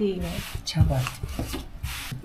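A voice speaking a short word or two, with short rubbing and scraping noises, one about half a second in and another near the end.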